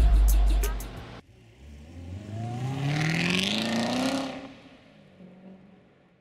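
A car engine revving up, its pitch rising steadily for about two seconds with a rushing whoosh at the top, then fading away. It follows hip-hop outro music that cuts off about a second in.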